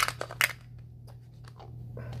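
Plastic coin capsules and tubes clicking and knocking together as a hand rummages through a storage case: a few sharp clicks in the first half second, then only faint handling over a low steady hum.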